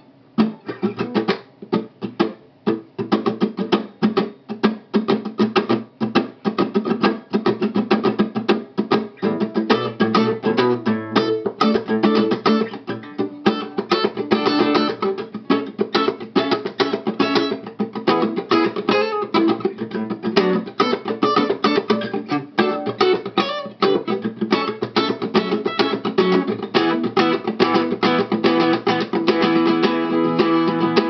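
Acoustic guitar playing a funk rhythm part in rapid, steady strums. It starts with a few sparse strokes and settles into a continuous groove within a couple of seconds.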